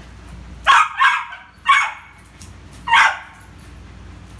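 Small brown poodle barking at a floating balloon as it plays: four short barks, the first two close together about a second in, the last about three seconds in.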